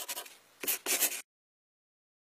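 Marker pen scratching across a white board in quick strokes. It pauses about a third of a second in, then a second burst of strokes stops abruptly a little past a second in.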